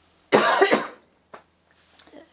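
A man coughing: a short, loud fit of coughs about a third of a second in, lasting about half a second.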